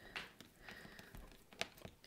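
Faint handling noise of a hand moving over drawing paper, with one soft tap a little before the end.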